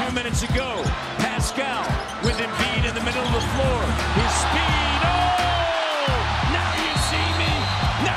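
Basketball bouncing on a hardwood court and sneakers squeaking in many short rising and falling chirps, over steady arena crowd noise.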